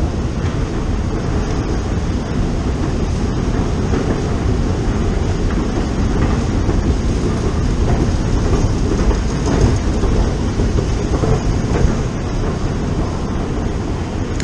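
Steady low mechanical rumble with a faint rattle, heard while riding a long escalator down into a deep-level London Underground station.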